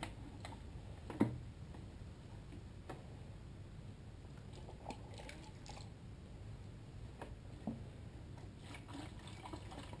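Faint water sounds of a sponge and a plastic bucket being dipped in a bin of rinse water: light drips and small sloshes, with a few soft knocks.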